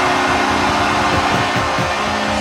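Arena goal horn sounding steadily as a chord of several held tones, over a crowd cheering loudly: the signal that the home team has just scored.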